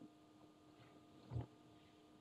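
Near silence: room tone with a faint steady hum, and one brief soft low sound a little past halfway through.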